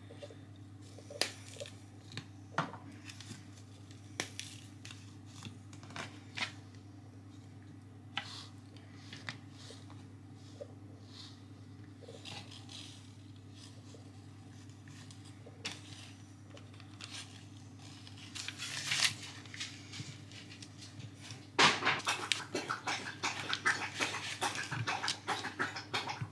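Scattered light taps and rustles of hands handling puff pastry and parchment paper on a metal baking tray, over a steady low hum. About four seconds from the end, a quick run of clicks as a fork presses the pastry edges against the tray.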